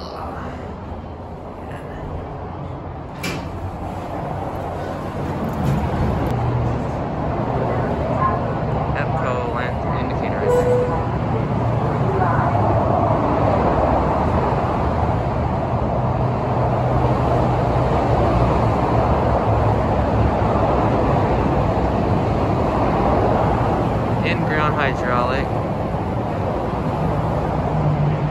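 Steady freeway traffic noise, growing louder over the first six seconds and then holding level.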